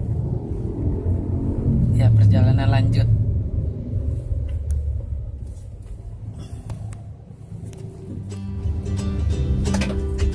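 Steady low road rumble inside a moving car's cabin, with a short voice about two seconds in. Guitar music comes in near the end.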